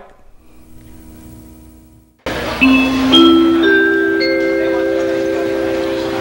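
Electronic keyboard sounding four notes one after another, each higher than the last and each held, so they build into a sustained chord, like an announcement chime, over steady tape hiss. It comes in suddenly about two seconds in, after a faint hum.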